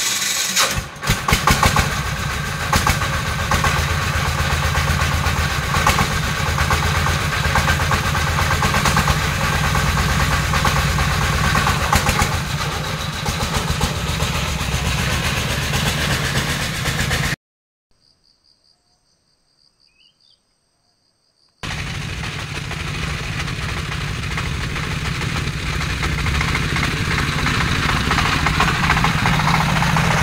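Single-cylinder diesel engine of a công nông farm tractor-truck running with a steady clatter as it pulls its loaded trailer. About two-thirds of the way through, the sound drops to near silence for about four seconds, then the engine is heard running again.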